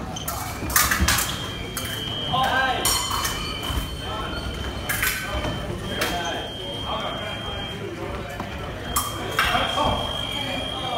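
Fencing bout: sharp footwork stamps on the strip and metallic blade clashes, with a scoring machine's steady high tone sounding for a couple of seconds at a time, about two seconds in, again around six seconds in and once more near the end.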